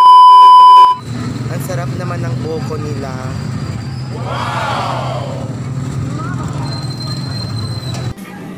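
A loud, steady electronic beep lasting about a second. Then busy street sound: people's voices over the steady drone of a running motor, with a loud call that rises and falls in pitch around the middle.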